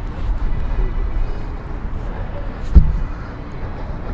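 A single dull, low thump about three-quarters of the way through, over a steady low rumble. This fits a body dropping onto a partner or the floor.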